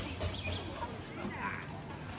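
Street-market ambience: background voices of passers-by over a steady street noise, with a few light clicks or knocks.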